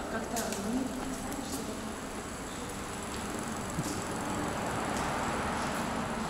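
Water from a courtyard fountain splashing into its stone basin, a steady rush that grows a little louder toward the end, with faint voices of passers-by.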